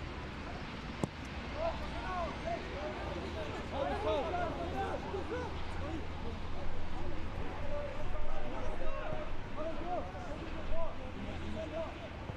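Players and coaches shouting short calls across a football pitch, with loud bursts of calls near the end, over a steady low rumble.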